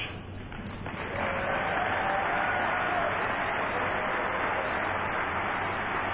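Large indoor audience applauding, swelling about a second in and holding steady.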